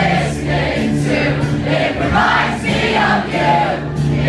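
Live acoustic guitar strumming with the singer and the crowd singing along together in chorus.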